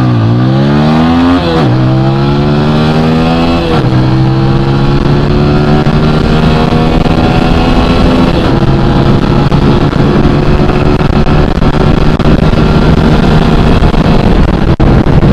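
Single-cylinder TVS Apache RTR 200 4V motorcycle engine at full throttle, upshifting three times in quick succession in the first four seconds. It then pulls in a high gear with a slowly rising pitch as the bike climbs past about 110 km/h.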